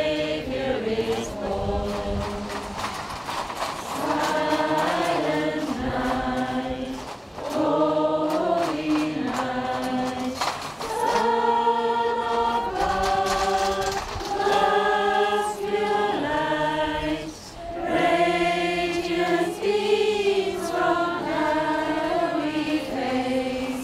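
A group of carol singers, mostly women's voices, singing together unaccompanied in phrases of long held notes, with a couple of short breaks between lines.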